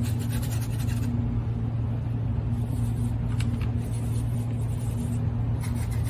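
A steady low hum throughout, with the soft scratching of a round paintbrush stroking acrylic paint onto a stretched canvas.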